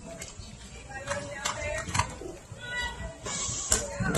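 Indistinct background voices with a few scattered short knocks.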